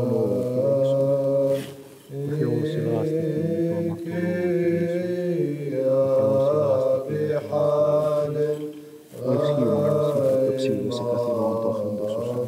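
Byzantine church chant: low voices singing a slow melody in long held notes over a sustained lower drone note. The chant breaks briefly between phrases about two seconds in and again about nine seconds in.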